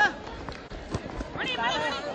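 People's voices talking or calling out, with a few short knocks about halfway through.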